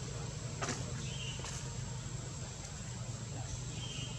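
Outdoor background ambience: a steady low rumble with a constant thin high-pitched whine, a single sharp click under a second in, and two short high chirps.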